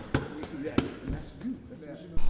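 Boxing gloves hitting focus mitts during pad work: sharp slaps, two clear ones about two-thirds of a second apart.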